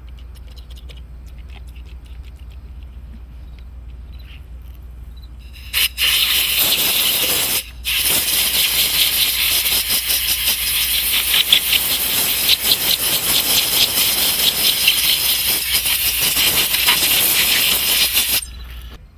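Compressed-air blow gun hissing loudly as it blows a spray rig's filter screen and screw dry. The hiss starts about six seconds in and breaks off briefly once about two seconds later, over a low steady hum.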